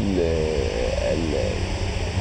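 A man's voice drawing out a long hesitant vowel, a filler sound while he searches for his next words, over a steady low rumble.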